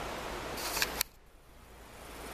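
A short high hiss and two sharp clicks from the handheld Nikon Coolpix P300 compact camera, the louder click about a second in. Right after it the steady outdoor background noise drops off suddenly and slowly comes back.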